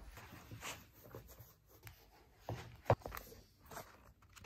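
Quiet rustling and handling noises with scattered small clicks; a sharper click about three seconds in is the loudest.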